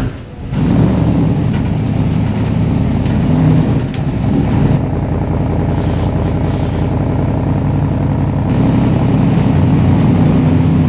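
V8 engine of a Mk1 Ford Escort drag car running at low revs with a lumpy idle and small wavers in pitch, just after its burnout and before launching.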